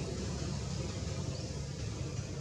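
Steady low rumble with a hiss over it, outdoor background noise with no clear single source, and a faint short high chirp about a second and a half in.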